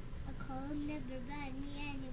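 A young girl singing, holding one long, slightly wavering note.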